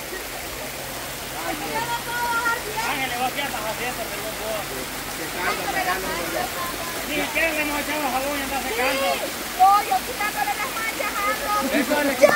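Steady rush of a shallow river flowing, with women's voices chattering indistinctly over it.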